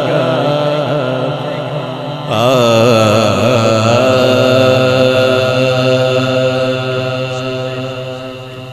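Male naat reciter's voice singing wordlessly into a microphone. A wavering, ornamented run comes about two seconds in, then one long held note that fades a little near the end.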